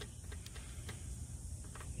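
A few faint clicks of a plastic timer module being handled and held in place against a metal control panel, over low steady background noise.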